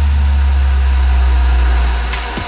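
Electronic dance music in a DJ mix: a long, steady, very deep bass note held with no kick drum, over a soft hiss.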